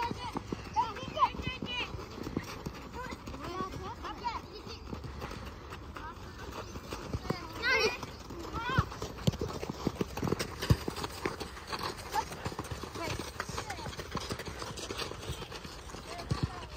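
Children's voices calling out during a youth football match on a dirt pitch, over running footsteps and scattered sharp knocks of the ball being kicked. The loudest knock comes about two-thirds of the way through.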